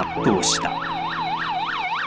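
Ambulance siren in a fast yelp, its pitch sweeping up and down about three to four times a second.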